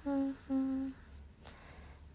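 A young woman humming two short notes on the same steady pitch, one after the other.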